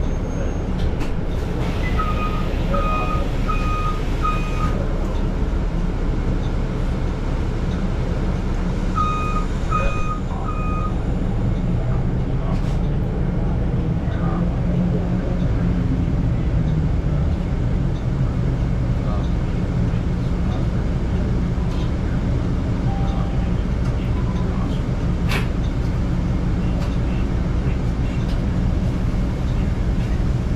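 Steady low hum inside a stationary 2021 Nova hybrid city bus. It is broken by two runs of electronic warning beeps: four evenly spaced beeps about two seconds in, and three more about nine seconds in.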